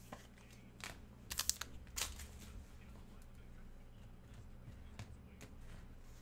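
Faint crinkling and crackling of trading-card pack wrappers and cards being handled: a few sharp crackles in the first couple of seconds, the loudest cluster about a second and a half in, then only light ticks.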